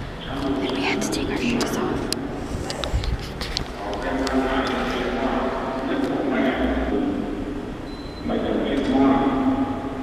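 Indistinct human voices in a large hall, with no clear words.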